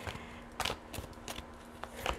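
A deck of oracle cards being shuffled by hand: a few sharp card flicks and soft rustles at irregular intervals.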